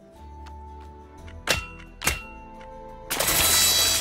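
Animated film soundtrack: background music with two sharp knocks about half a second apart, the first about a second and a half in, then a loud rushing burst of noise through the last second.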